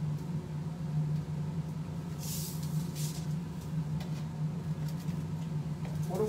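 Granulated sugar poured from a carton into a glass beaker: two short hisses of pouring grains about two seconds in, with a few light clicks, over a steady low hum.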